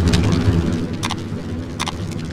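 Roaring-fire sound effect for flaming title text: a steady low rumble with a few short crackles.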